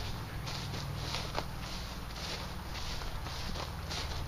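Footsteps walking across a grass lawn: soft swishing steps, about two a second, over a low steady hum.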